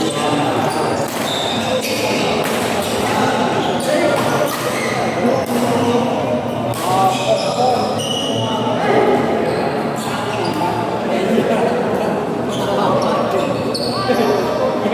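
Badminton rackets striking the shuttlecock in a rally, sharp hits at irregular intervals echoing in a large hall, with voices talking throughout.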